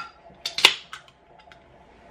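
Drinks can's ring-pull being opened: a few quick clicks and a sharp pop about half a second in, with a short hiss after it, then a couple of faint handling clicks.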